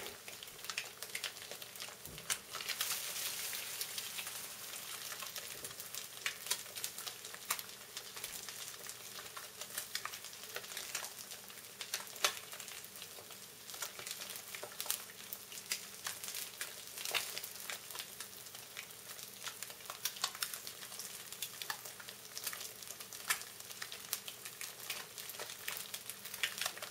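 Three eggs frying in a skillet: a steady sizzle with frequent small crackles and pops of spitting fat.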